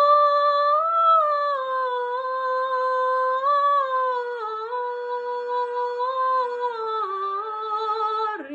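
A girl singing solo: a slow melody of long held notes that step gently down in pitch, with brief rises a second and three and a half seconds in.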